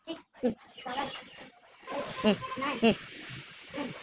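Children's voices: short bursts of talk and calls from a group of schoolchildren, none of it clear speech.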